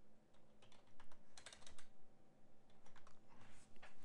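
Computer keyboard typing: a run of irregular key clicks as a word is typed in.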